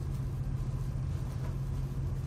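Steady low hum of room background noise, with no other event standing out.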